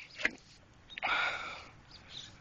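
A short breathy sniff about a second in, lasting under a second.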